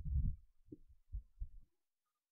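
Soft, low, muffled thuds: a brief rumble at the start, then three short thumps a few tenths of a second apart.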